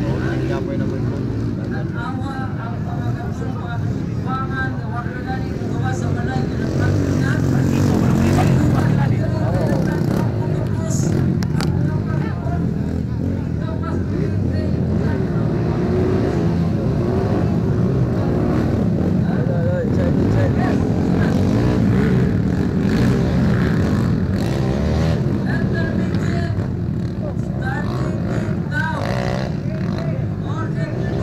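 Motocross dirt bike engines running and revving around the track, their pitch rising and falling, mixed with crowd voices and chatter throughout.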